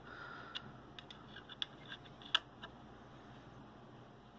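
Rockit 99 delid tool's push screw being turned with a hex key against a Core i7-7700K's heat spreader, giving a few faint, irregular clicks and ticks, the sharpest about two seconds in, as the tool strains the lid's adhesive before it gives.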